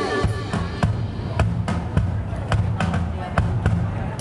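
Live band music played loud: a steady bass line under sharp, repeated drum hits, with little singing in this stretch.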